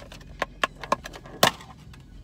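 Clear plastic food container and its wrapping being handled: several sharp plastic clicks and crackles, the loudest about one and a half seconds in.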